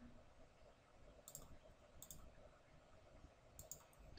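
Near silence with a few faint computer mouse clicks, two of them close together near the end.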